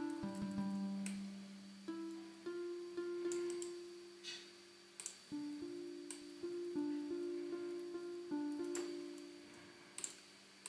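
Software harp instrument playing a slow phrase of plucked notes, each ringing on until the next, as it is shaped through a parametric EQ. A few sharp clicks sound over it.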